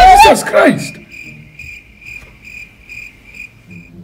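A short vocal exclamation that rises and falls in pitch, then crickets chirping in even, quiet pulses about three times a second: the stock cricket sound effect for an awkward silence.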